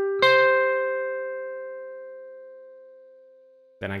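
Clean-tone electric guitar: a second, higher note is picked just after the start and rings together with the first, both left to ring and fading slowly over about three and a half seconds.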